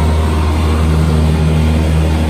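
Jet ski engine running steadily at speed: a constant low drone under the rush of water and wind.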